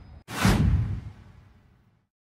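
Whoosh transition sound effect: a sudden rush of noise about a quarter second in that fades away over about a second and a half.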